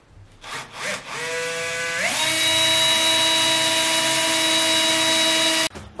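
Cordless drill drilling into a wall: after a couple of short blips the motor runs at a lower speed, steps up to full speed about two seconds in, runs steadily, and stops suddenly near the end.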